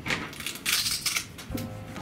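Background music, with a brief noisy clatter of hard plastic game pieces about halfway through.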